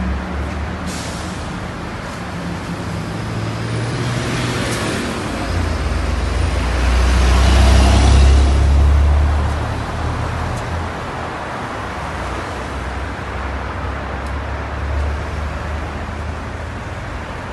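Street traffic noise with a large truck and trailer passing close by: its deep rumble and tyre noise swell to the loudest point about eight seconds in, then fade back into the steady traffic.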